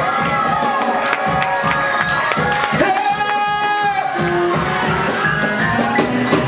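Live gospel praise music: singers on microphones over a church band with drums and keyboard. The melody rises and falls in long sung phrases over held chords, with a high, bright held voice in the middle.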